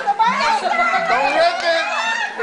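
Several excited voices, children's among them, calling out over one another without a break.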